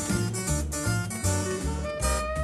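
Swing jazz instrumental from a late-1950s studio stereo recording: a quick, bright plucked-string line over a steady pulsing bass.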